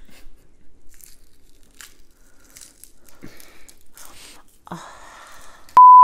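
Faint scattered crackling and rustling, then near the end a loud, steady 1 kHz test-tone beep lasting under half a second, the kind that goes with television colour bars.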